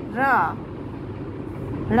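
A single spoken syllable, "ra", sounded out slowly near the start, then a steady low background rumble.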